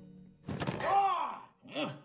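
Cartoon film soundtrack: a sharp thunk about half a second in, followed by a short pitched cry that rises and falls, then a briefer one near the end.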